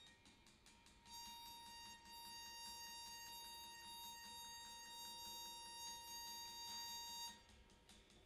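A single high note bowed on an acoustic guitar string, held steady for about six seconds: it starts about a second in and stops shortly before the end.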